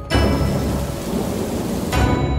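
Rain-and-thunder sound effect: a steady rushing hiss like heavy rain over a low rumble, with no pitched music.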